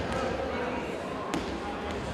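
Crowd chatter echoing in a school gymnasium, with a single sharp knock about a second and a half in.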